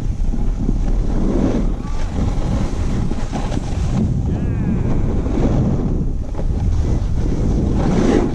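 Steady wind buffeting on a helmet- or body-mounted action camera's microphone as the rider slides down a groomed ski run, with the hiss of sliding over packed snow. A brief wavering high call cuts through about halfway.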